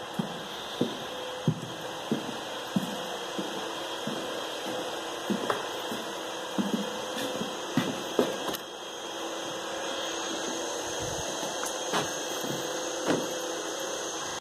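Footsteps on loose wooden planks, a run of irregular knocks that thin out after about halfway, over a steady hum.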